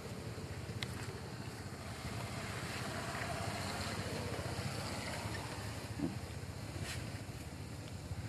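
Steady outdoor background noise with a low rumble, with a faint click about a second in and a brief faint crackle near the end.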